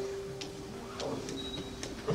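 A single held instrument note from the end of the song lingers and fades, with about three sharp clicks, roughly one every half second.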